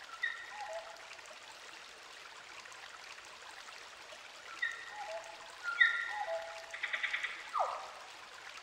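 Beatless intro of a trance track: a steady, water-like hiss with short electronic blips stepping down in pitch, in two groups, and a quick falling sweep near the end.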